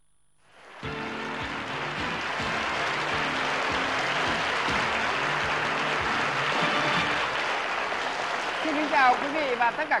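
Studio audience applauding, starting abruptly after a brief silence, with music playing underneath; a man's voice comes in near the end.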